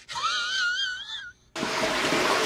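A person's high-pitched, wavering wheeze-like squeal, rising in pitch over about a second and then cutting off. After a brief silence a steady noisy background follows.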